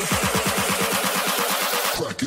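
Electronic dance track in a build-up: drum hits repeating fast, about eight to ten a second, with the deep bass thinned out under a dense hissing wash.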